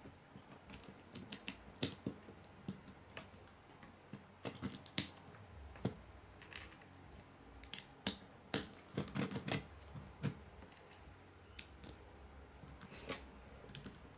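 Small plastic Lego bricks clicking as they are pressed together and handled on a wooden tabletop: irregular sharp clicks, busier about four and eight seconds in.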